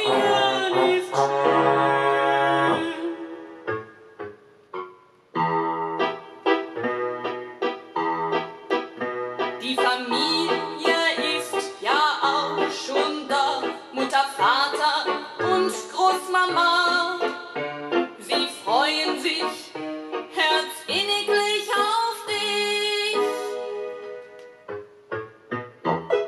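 Music played from a vinyl record on a Fisher Studio Standard MT-6221 turntable with an Audio-Technica cartridge: a singing voice over keyboard or piano accompaniment. The music fades to almost nothing about four seconds in and comes back about a second later.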